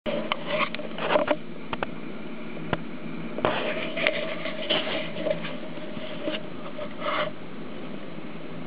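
Handling noise: fleece hoodie fabric rubbing and brushing against the camera's microphone, with scattered clicks and rustles that stop a little before the end, over a steady faint hum.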